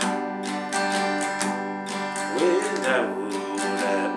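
Acoustic guitar strummed in a steady rhythm, holding an open G chord.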